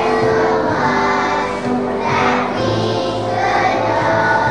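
A choir of kindergarten children singing together over instrumental accompaniment.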